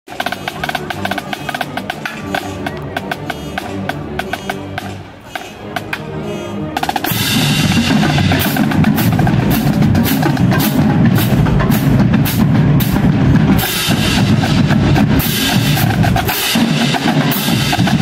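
Marching drumline of snare drums, bass drums and crash cymbals playing a drum cadence. A lighter drum pattern runs for about the first seven seconds, then the full line comes in much louder with cymbals, with a brief drop near the end.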